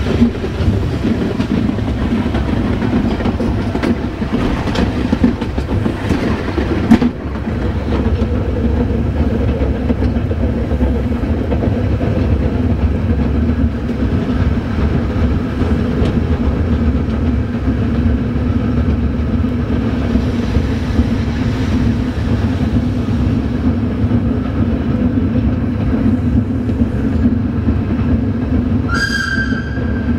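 Metre-gauge train of the Mesolcina railway running, heard from its rear cab: a steady rumble and hum of wheels on rail, with a few sharp knocks and one loud click about seven seconds in. Near the end a brief high tone sounds for about a second.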